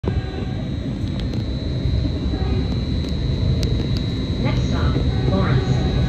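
Caltrain passenger car in motion, heard from inside: a steady low rumble of the train running on the rails, with a thin steady high tone and a few faint clicks.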